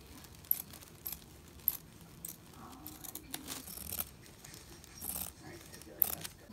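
Fabric scissors cutting through a cotton-blend gingham bedsheet: soft, quiet snips with sharp little clicks of the blades closing, spaced about a second apart, and a couple of longer cutting strokes near the middle and near the end.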